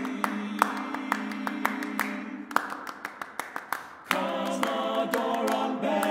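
All-male a cappella ensemble singing held chords over steady hand clapping, about three claps a second. The voices thin out and drop in level, then the full group comes back in loudly about four seconds in while the clapping keeps on.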